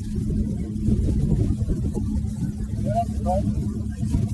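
Motorboat engine running at speed, a steady low rumble and hum, with wind buffeting the phone's microphone.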